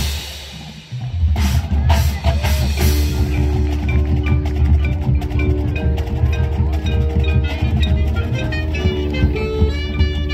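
Marching band music: a sustained full-band chord cuts off at the start and rings away, and about a second in the percussion section comes in with drums over a steady low bass and marimbas playing a repeated rhythmic pattern.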